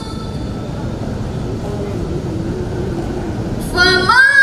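A pause in a woman's melodic Quran recitation: a steady low rumble of hall and sound-system noise. Just before the end her chanting voice starts again, rising in pitch.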